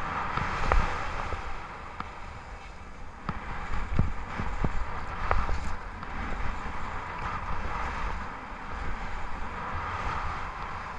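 Wind buffeting a helmet-mounted action camera's microphone while skiing downhill, over the hiss and scrape of skis sliding on packed snow that swells and fades with each turn. Scattered short clicks and knocks run through it.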